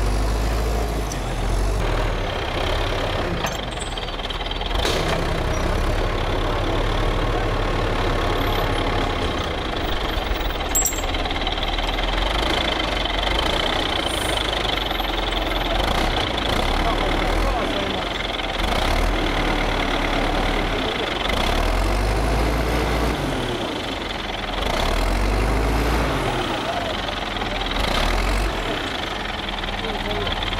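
Forestry skidder's diesel engine running with a steady low note, revved up and back down twice near the end. Voices murmur underneath.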